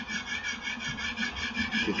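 A small machine running: an even pulsing noise at about six or seven pulses a second over a low hum.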